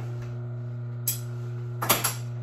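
Steady hum of an industrial sewing machine's electric motor left running at rest, with two sharp clicks, one about halfway through and a louder one near the end.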